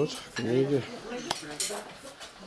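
Dishes and cutlery clinking and clattering as a table is cleared after a meal, with sharp clinks in the second half. A man's short voiced utterance comes about half a second in.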